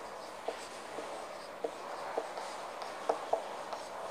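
Marker pen writing on a whiteboard: faint, short squeaks and taps at irregular intervals as the strokes of the letters are drawn.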